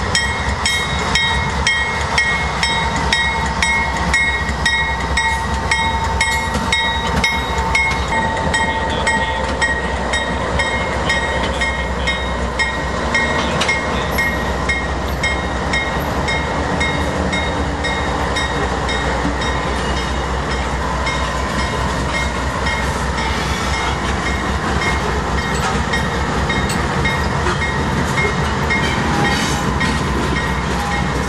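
Two CSX GE AC4400CW diesel-electric locomotives running past at low speed, a steady loud engine rumble, with a regular clang about twice a second that fades out about halfway through.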